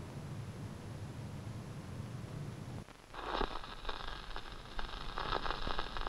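A steady low room hum for about three seconds. It then cuts abruptly to the crackle and scattered pops of a vinyl LP's surface noise under the stylus of a small portable record player.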